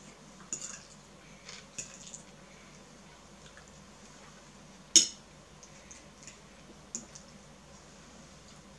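A metal fork clinking against a ceramic plate while eating: a few light clinks, one sharp louder clink about five seconds in, and another near the end.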